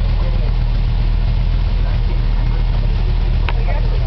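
Desert race car engines idling steadily with a low hum. A single sharp click comes near the end.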